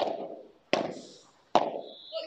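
Padel rally: three sharp pops of the ball off rackets and court, spaced a little under a second apart, each dying away quickly.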